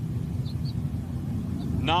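Steady low rumble of the New Shepard booster's BE-3 rocket engine burning during powered ascent.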